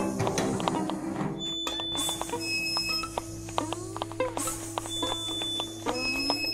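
Experimental electronic music: a steady low drone under scattered clicks and short, high, steady beeps, with bursts of hiss about two and four seconds in.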